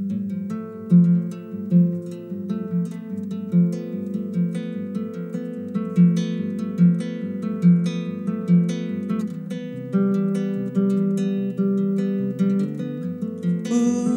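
Nylon-string classical guitar fingerpicked solo in a steady pattern, a low bass note falling a little more than once a second under ringing chord tones. The harmony changes about ten seconds in. It is the song's instrumental introduction, before the voice comes in.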